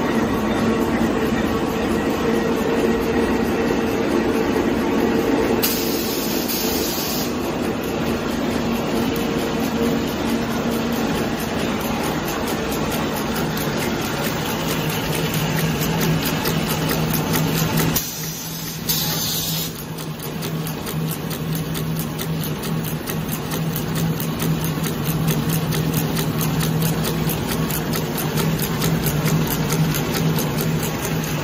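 One-colour printing dinner napkin paper machine running at production speed: a steady, fast mechanical clatter with a constant hum. The noise changes abruptly a few times as different sections of the line are shown, from the printing rollers to the folding and stacking section.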